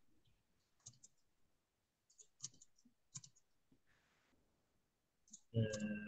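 A few faint, scattered clicks during a pause, with a brief soft hiss about four seconds in.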